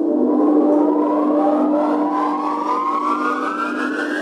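Synthesized intro sound effect: a steady low drone under a cluster of tones that glide slowly and evenly upward in pitch.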